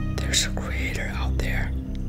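Whispered speech over a low, pulsing music drone.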